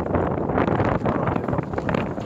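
Wind buffeting the microphone: a loud, steady rushing noise.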